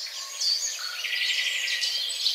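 Small birds chirping in high, quick calls and short whistled glides, with a fast, even trill about a second in.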